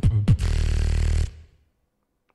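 Beatboxing: a couple of sharp vocal percussion hits, then a held, buzzing low bass note that cuts off suddenly a little over a second in.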